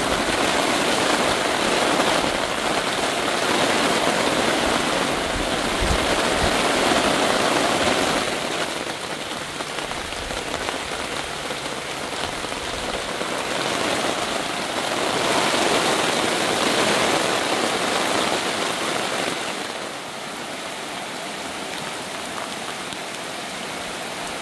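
Heavy rain pouring down, a dense steady hiss that swells and eases in waves and falls back to a lighter downpour near the end.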